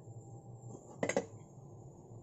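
A brief double clatter about a second in, a spoon and sliced ginger knocking against a metal cooking pot as the ginger is added.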